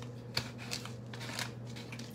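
A few light, sharp crackles and clicks as crispy fried onion is crumbled and sprinkled by hand over a bowl of noodle soup, with a steady low hum underneath.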